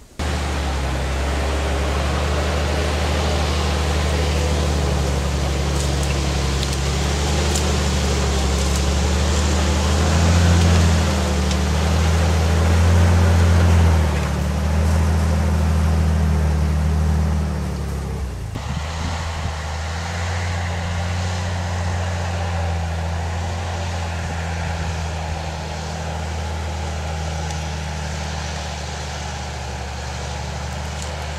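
A steady engine drone that starts abruptly, swells a little in the middle and eases down about eighteen seconds in.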